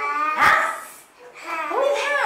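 A young girl's high-pitched voice in short rising and falling phrases, with a single knock about half a second in.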